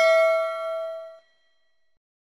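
Notification-bell chime sound effect: a single struck ding whose several ringing tones fade and then cut off a little over a second in.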